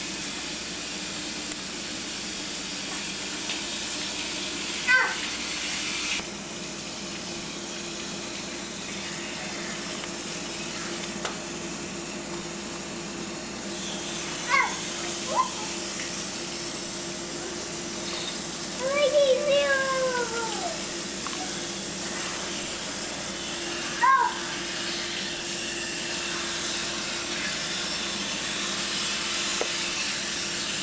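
Garden hose spraying water onto a wet concrete patio, a steady hiss, with a baby's short squeals and babbles about five, fifteen, nineteen and twenty-four seconds in.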